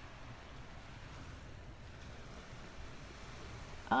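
Steady low rumble of wind on the microphone, with the faint wash of shallow water lapping over sand.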